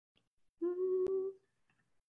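A woman's brief hummed "mmm", held at one steady pitch for under a second about halfway through, with a single sharp click in its middle.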